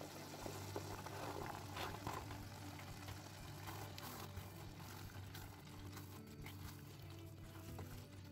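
Green beans and carrots tipped into a pan of simmering tomato sauce, then stirred with a silicone spatula: faint soft clicks and shuffling early on, over a steady low hum.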